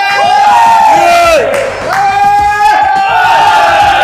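A small group of people yelling and cheering to fire up a lifter before a heavy log press, several voices holding long drawn-out shouts that rise and fall.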